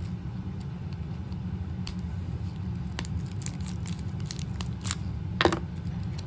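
Plastic toy packaging being worked open by hand: scattered faint clicks and crinkles, with one louder click about five and a half seconds in. A steady low hum runs underneath.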